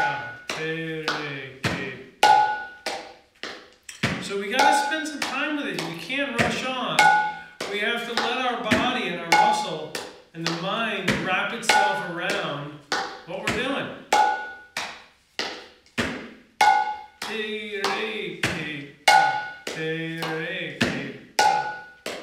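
Bengali mridanga (khol) played by hand in the repeating 'te re ke ta' drill: quick sharp strokes on the small treble head, some ringing with a clear high pitch, mixed with deeper tones from the large bass head. The phrase comes round about every two and a half seconds.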